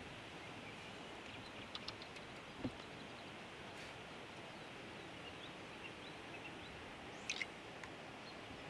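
Faint outdoor ambience: a steady low hiss with faint, scattered bird chirps, a few small clicks and a soft knock.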